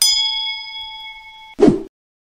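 Notification-bell sound effect: a single bright ding that rings on for about a second and a half, fading, then stops abruptly. A short loud burst follows near the end.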